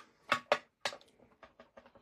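Light plastic clicks and taps from handling an ink pad case and a clear acrylic stamp block: a few sharp clicks in the first second, then fainter small knocks as the stamp is brought to the ink pad.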